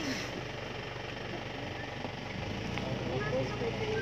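Vehicle engine idling steadily, with people's voices talking over it, louder near the end.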